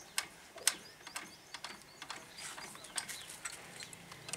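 Irregular sharp metal clicks and clinks of an adjustable spanner working a nut on an old diesel engine's fittings, with the engine stopped.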